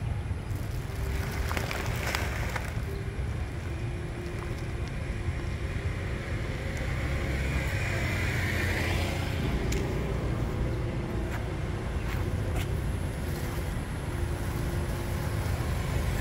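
Roadside traffic: a steady low rumble with the faint hum of passing motor engines coming and going, and a few light clicks.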